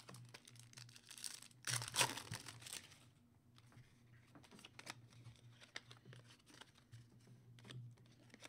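A foil trading-card pack wrapper is torn open and crinkled by hand. The loudest tear comes about two seconds in. After it, quieter rustles and clicks follow as the cards are slid out and handled.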